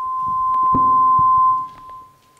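Public-address microphone feedback: one steady high whistle that swells over about a second and a half, then drops away suddenly and fades. A few light knocks sound over it.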